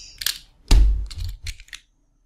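A sharp click, then a dull thump about three-quarters of a second in, followed by a quick run of smaller clicks and knocks.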